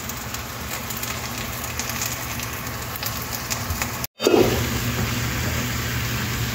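Chicken drumsticks frying in a shallow layer of sauce in a nonstick pan: a steady sizzle with light crackles. It cuts out for an instant about four seconds in.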